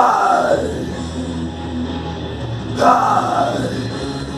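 Rock backing track with guitar, over which a male singer yells into a handheld microphone twice: once at the start and again near three seconds in, each cry falling in pitch.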